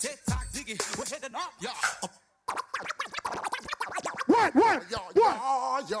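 DJ scratching over a hip-hop beat on a DJ controller: deep kick-drum thumps at first, a brief cut to silence about two seconds in, then rapid back-and-forth scratches with quick rising-and-falling pitch swoops and chopped cuts.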